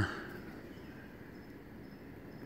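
Quiet outdoor background with a faint, steady high-pitched tone and no distinct events.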